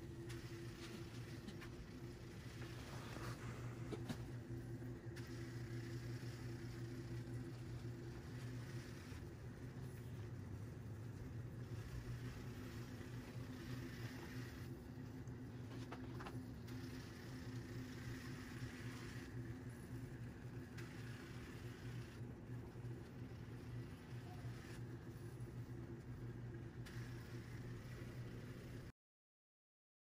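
Small electric drive motors and vacuum fan of a homemade robot vacuum car running steadily as it drives itself around the floor: a continuous hum with a few held tones, and a higher hiss that swells and fades every few seconds.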